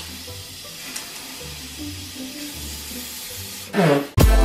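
A faint steady hiss over a low hum. Near the end a short swoosh falls quickly in pitch, leading into loud music.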